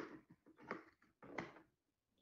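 Near silence with three faint short clicks, about two-thirds of a second apart.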